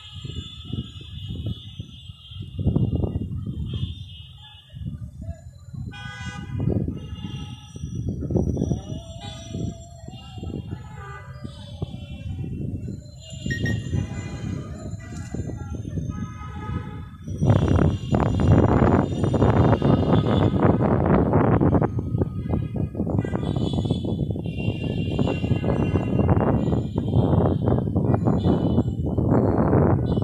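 City traffic ambience with scattered car horns honking. A bit over halfway through, a louder low rumbling noise sets in and stays.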